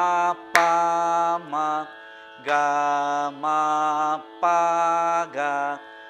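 A man singing Carnatic swara syllables of a middle-octave varisai exercise in raga Mayamalavagowla: about six held notes with short breaks between them, some with ornamental wavers in pitch, over a steady drone.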